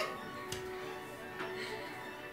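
Quiet background music with a sustained note, and two sharp ticks about a second apart.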